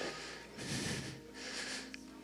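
A man breathing into a handheld microphone held close to his mouth: two faint breaths, the first about half a second in and the second a little before the end.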